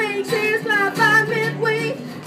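A young boy singing with his own acoustic guitar accompaniment, a live busking performance of a pop-folk song. His voice moves in short sung phrases over the strummed guitar chords.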